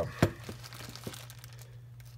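A plastic bag being handled and crinkled by hand, with a sharp click about a quarter second in and a fainter one about a second in.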